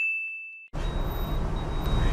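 A single bright ding sound effect, edited in: a bell-like chime that fades and cuts off abruptly under a second in, set in dead digital silence. Low car-cabin background noise with a faint steady high whine then comes back.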